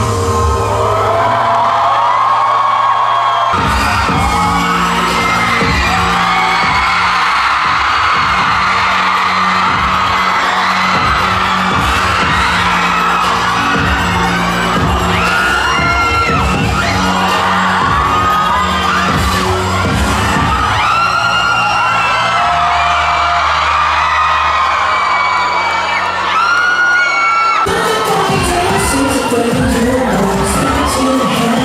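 Concert crowd of fans screaming over live pop music with a heavy beat. A sung passage breaks off about three seconds in, where the beat and the screaming take over, and the music changes again near the end.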